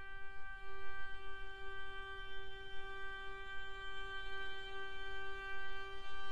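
A contemporary chamber piece for clarinet, violin, viola, cello and electronics, opening on a single long note held steadily as a drone over a faint low rumble.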